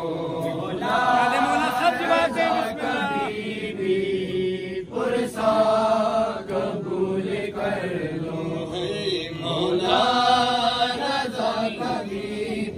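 A group of men's voices chanting a noha, a Shia lament, together, in drawn-out sung phrases with short breaks between them.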